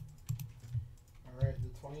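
A few keystrokes on a computer keyboard, then a man's voice begins speaking in the second half.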